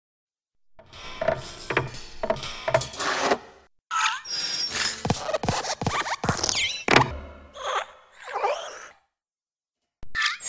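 Cartoon sound effects of an animated desk lamp hopping, as in Pixar's hopping-lamp logo: a series of springy thunks and knocks about twice a second, then more hits mixed with sliding, squeaky boing-like tones, ending about a second before the end.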